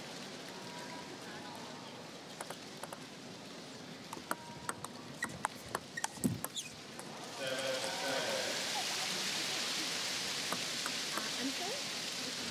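Table tennis ball clicking off paddles and table in a quick rally, a run of sharp ticks, followed from about seven seconds in by the crowd applauding and cheering as the point ends, louder than the rally.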